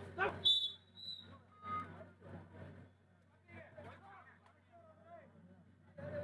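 A whistle blown in two short, high blasts about half a second and a second in, over men's voices talking and calling at a kabaddi match.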